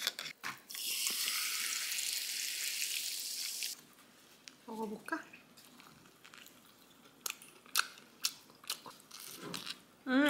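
Carbonated water poured from a plastic bottle over ice in a glass: a steady hissing pour of about three seconds that stops abruptly. Later come a brief voiced sound and a few light clicks.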